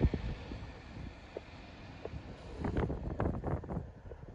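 Wind buffeting the microphone in gusts, a low rumbling that grows stronger in the last second or so.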